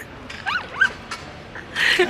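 A man giggling: a few short, high-pitched squeaky glides about half a second in, then breathy bursts of laughter near the end.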